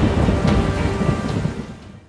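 Thunderstorm sound effect: rain with rumbling thunder and a few sharp cracks, fading out over the last half second.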